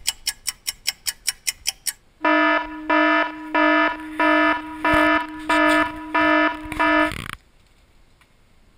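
Electronic alarm clock going off: first a quick run of short beeps, about six a second, then seven longer, louder beeps in a steady rhythm that cut off suddenly near the end as it is switched off.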